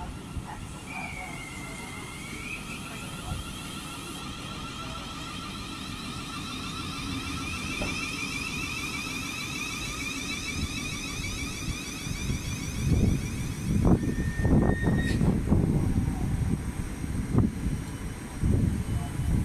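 Thameslink Class 700 electric multiple unit arriving at a platform: a steady electric traction whine over a low rumble, growing louder as the train comes alongside. In the last few seconds the carriages roll past with loud low thumps.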